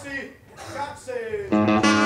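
A few words of talk, then about a second and a half in a band starts playing the song, with guitar to the fore.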